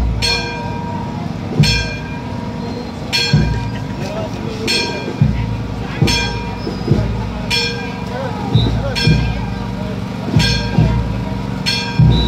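A bell struck steadily about every one and a half seconds, each stroke ringing briefly with a low thud under it, over the murmur of crowd voices.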